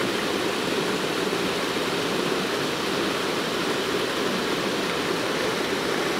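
Steady rushing of a small waterfall falling into a creek pool, an even, unbroken sound with no change in level.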